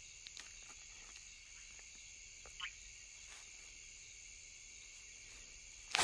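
Faint night-time chorus of insects and frogs: a steady high-pitched hum, with one short rising call about two and a half seconds in.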